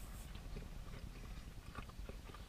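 Faint chewing of a mouthful of puff-pastry pie, with a scatter of soft, irregular mouth clicks.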